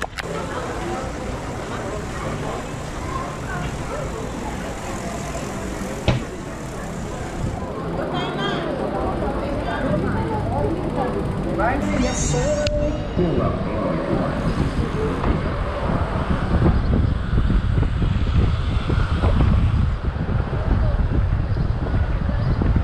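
Bicycle ride in city traffic heard from a camera on the rider: wind noise on the microphone, heavier in the second half, over traffic noise and snatches of voices.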